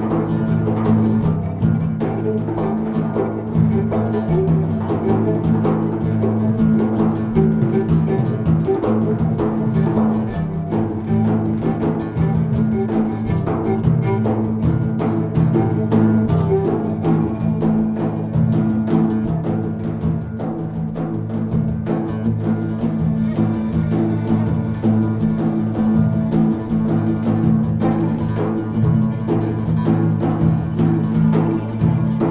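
Live acoustic trio playing together: bowed viola, plucked oud and hand-struck frame drums (tar and mazar). The low drum and oud notes are strongest, and quick drum strokes and plucks run throughout.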